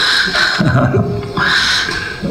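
A person's voice making a sound without clear words, as loud as the speech around it.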